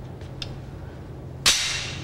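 A single sharp bang about one and a half seconds in, typical of a gunshot, with a short ringing tail from the enclosed range.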